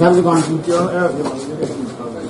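A man's voice talking indistinctly in the first second or so, fading after that.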